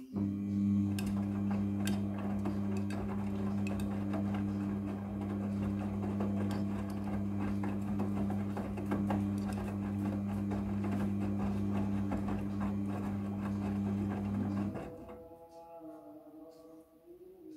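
Midea front-loading washing machine turning its drum in the wash tumble: the drive motor starts just after the opening and hums steadily while the wet load splashes and clicks inside the drum, then the drum stops abruptly about a second before the end.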